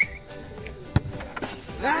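A football lands a single sharp hit about a second in, during a penalty shot, over faint background music; a voice cries out near the end.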